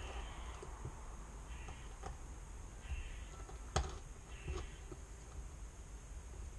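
Small parts of a 3D-printed line-trimming rig being handled and fitted together by hand: scattered light clicks and taps, the sharpest nearly four seconds in, with a few short, soft scrapes between them.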